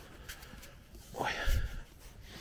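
Handling noise on a DJI Pocket 2 gimbal camera's built-in microphone as it is moved about. There are a few faint clicks, then a rustling burst with a low bump a little past the middle.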